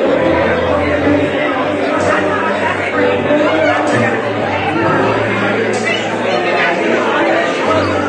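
Many people talking at once over a live band, with a singer, electric guitar and bass guitar playing held low bass notes.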